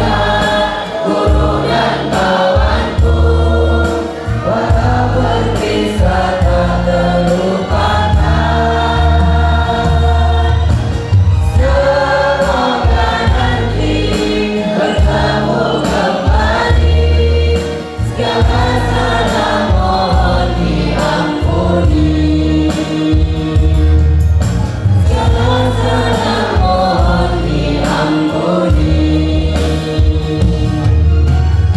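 A small group of teenage boys and girls singing together into microphones through a PA system, over amplified musical accompaniment with a strong bass.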